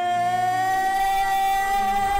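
A woman singing one long held note in a musical-theatre style, sliding up slightly in pitch at the start, over a soft instrumental accompaniment.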